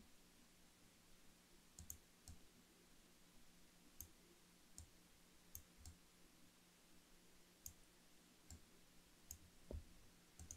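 Computer mouse clicking: about ten short, irregularly spaced clicks over a faint, steady low hum.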